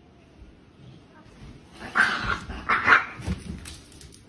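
Dog barking: two loud barks a little under a second apart, about halfway through.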